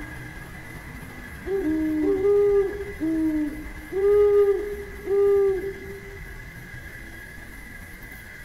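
A series of about five low, hollow hoots between about one and a half and six seconds in, at two slightly different pitches and partly overlapping, over a steady faint high-pitched hum.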